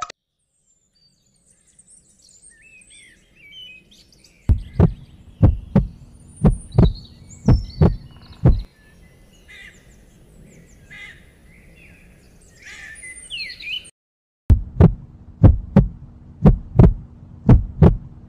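Cartoon sound effects: birds chirping and twittering in the background, and two runs of loud, deep thumps in pairs like a heartbeat, a little over one pair a second, each run lasting about four seconds with a short break between.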